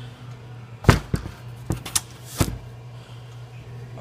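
Clunks and knocks of a Husqvarna Model 41 chainsaw being handled and set down on a workbench: about five sharp knocks between one and two and a half seconds in, the first the loudest.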